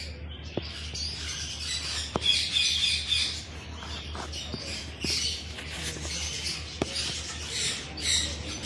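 Many small birds chirping and twittering in a continuous, overlapping chatter, busiest a couple of seconds in.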